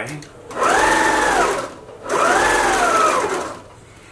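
Electric domestic sewing machine stitching a seam through the folded layers of a woven placemat, in two short runs about a second and a second and a half long, the motor rising to speed and slowing again each time.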